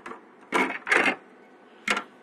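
A graphics card's cooler being pulled off the circuit board by hand: two short scraping rustles, then a sharp click near the end.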